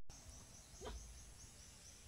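Faint outdoor background with a low rumble, and one short rising animal call about a second in.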